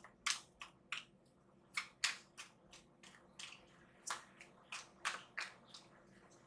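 Deck of tarot cards being shuffled in the hands: a run of short, soft card slaps and flicks, about three a second, faint.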